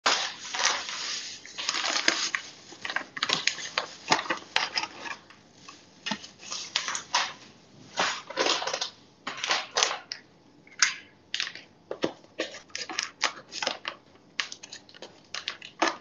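Plastic food packaging crinkling and rustling in irregular bursts, with small clicks and knocks as it is handled.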